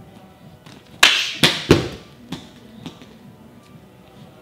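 A kick smacks a plastic sports-drink bottle off an outstretched hand about a second in. Two more loud knocks follow in quick succession as the bottle comes down onto the gym mats, then a couple of lighter bounces.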